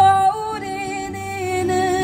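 A woman singing one long held note over an acoustic guitar. The note comes in loud and holds steady with a slight waver.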